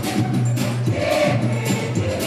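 Dance music from a DJ's mix played loud over a club sound system, with a steady beat, a held bass note and singing voices.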